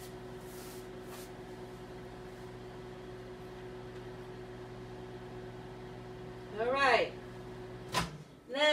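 A 900-watt microwave oven running on high: a steady hum with a few held tones, which stops with a click at the very end.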